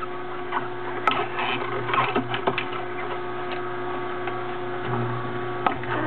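Omega masticating juicer running with a steady motor hum as its slow-turning auger grinds endive leaves, with scattered crackling clicks in the first few seconds and one more near the end.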